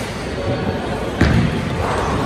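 A bowling ball thudding onto the lane at release, a single sharp impact a little over a second in, over the steady rumble and chatter of a busy bowling alley.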